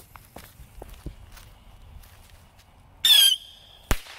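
Whistling bottle rocket with report: faint fuse crackle, then about three seconds in a brief, loud wavering whistle as it launches, and just before the end a single sharp bang as the report goes off.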